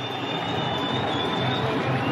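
Stadium crowd noise from a football match, an even steady haze of many distant voices. A thin, high, whistle-like tone is held over it, wavering slightly, and fades out before the end.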